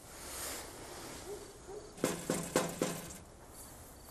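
A low, pitched hooting sound of a few short pulses about two seconds in, with fainter low notes just before it.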